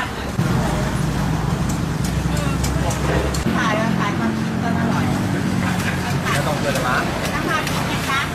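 A motor vehicle engine running steadily with a low hum, with people talking in the background. The hum changes about three and a half seconds in.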